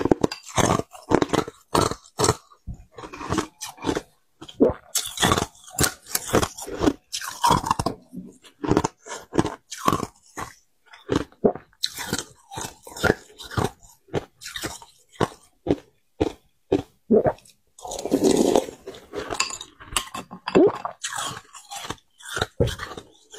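Close-miked chewing and crunching of soft ice chunks: an irregular run of sharp crunches, two or three a second, with a longer stretch of crunching about eighteen seconds in.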